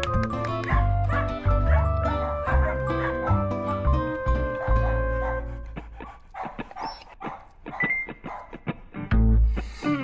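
Soft orchestral-style music with held notes, joined from about six seconds in by a quick run of short yips and barks from a puppy.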